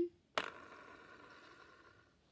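Plastic arrow spinner on a board-game dial flicked with a sharp click, then whirring as it spins and slowly dies away.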